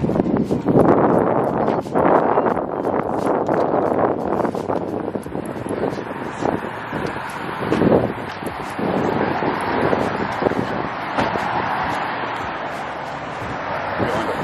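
Wind buffeting the microphone in a loud, uneven rush, with scattered knocks and bumps as suitcases are lifted and loaded into a car boot.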